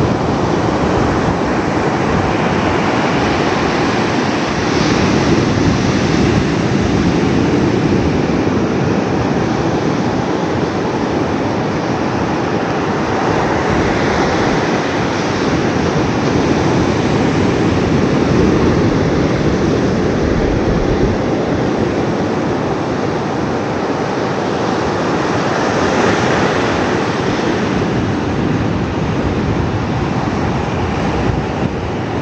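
Ocean surf breaking on a sandy beach: a continuous loud roar of waves that swells and eases every several seconds.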